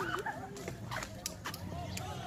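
Short, high, curving calls from an animal, heard among people's voices, with a few sharp clicks.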